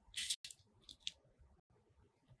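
Fingers handling a glitter foam craft ornament: a short scratchy rustle near the start, followed by a few faint clicks as small beads are pressed on.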